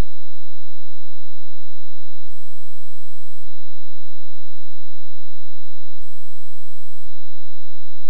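A loud, steady electronic tone running unbroken over a faint hiss, with four faint low thumps spread through it.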